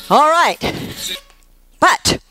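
A woman's short wordless vocal call that rises and then falls in pitch, followed by an airy breath and, near the end, a brief voiced sound.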